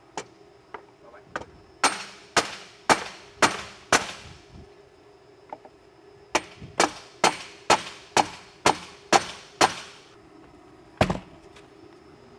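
Hammer blows tapping a window mull bar sideways to take up excess room in the width of the opening: a few light taps, then five strikes about two a second, a pause, then a run of about eight more and one last blow near the end.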